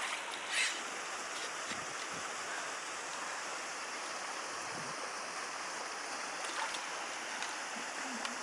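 Steady rush of flowing water in a small concrete ditch, with a brief splash about half a second in as a hooked carp thrashes at the surface.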